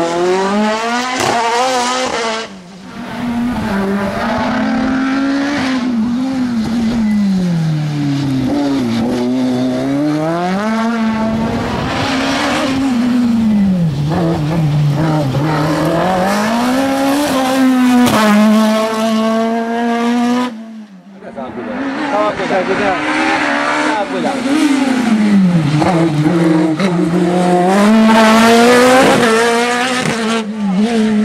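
Osella PA9/90 sports-prototype race car engine revving hard, its pitch climbing and falling again every second or two as the car accelerates and brakes between slalom cones. The sound cuts out briefly twice, about two and a half seconds in and about twenty-one seconds in.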